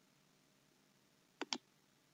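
Two quick computer mouse clicks about a second and a half in, over faint room tone.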